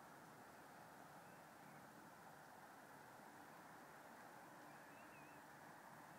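Near silence: faint, steady background hiss, with two faint, short chirps, one about a second in and one about five seconds in.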